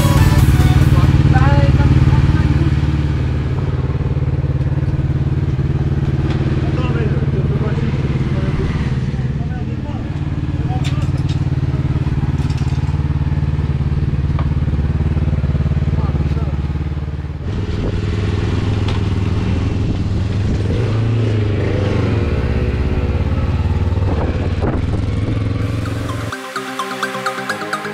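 A race motorcycle's engine running steadily at idle on its paddock stand, with people talking over it.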